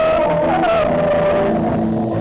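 Live rock band playing, with an overdriven electric guitar holding one long sustained lead note that bends down slightly about half a second in and then holds, over bass and drums.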